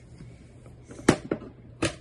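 Three sharp clicks and knocks from a hard-shell violin case being handled, the first and loudest about a second in.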